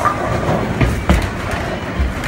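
Bowling ball released onto the lane, landing with a sharp knock about a second in, then rolling with a steady low rumble.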